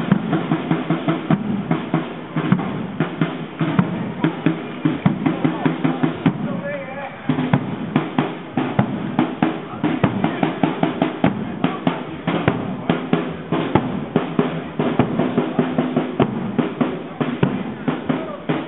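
Marching band playing a march: brass and clarinets over a steady beat of bass drum and snare. For about a second near the middle the wind instruments drop out while the drums keep time.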